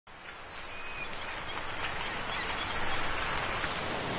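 A school of small fish thrashing and splashing at the sea surface, a dense pattering hiss like rain that grows louder.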